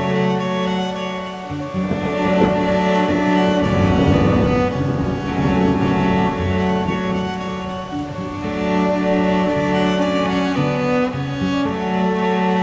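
Background music of slow bowed strings, with low held notes that change every second or two.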